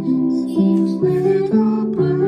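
Piano playing a slow hymn tune, a new note or chord about every half second.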